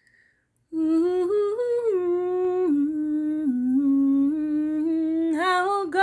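A woman's voice singing a slow, wordless melody unaccompanied, holding long notes that step up and down in pitch. It starts about a second in, after near silence.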